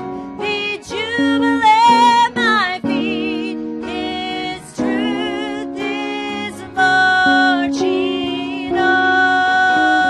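A woman singing a slow church song solo over instrumental accompaniment, her voice rising and falling with short phrases at first, then long held notes with vibrato in the second half.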